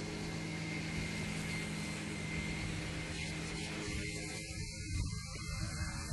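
Flightstar II ultralight's engine and propeller droning at a steady pitch in flight. The hiss above the drone thins out about four seconds in.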